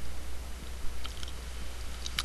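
A quiet pause with a steady low hum and a few faint clicks around the middle.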